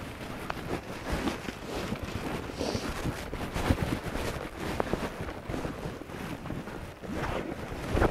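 Wind buffeting the microphone in a steady rumble, with scattered soft thuds of a horse's hooves as it canters on a lunge line over wet turf.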